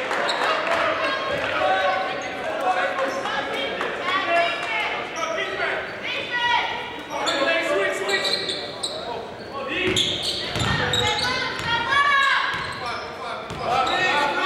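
Basketball dribbling on a hardwood gym floor amid indistinct calls from players and onlookers, echoing in a large hall. Low bounces come through more strongly a little past two-thirds of the way in.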